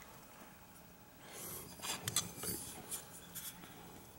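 Carburetor parts being handled by hand: soft rubbing, then a few light clicks as the removed float bowl of the APT SmartCarb is lifted away and turned over.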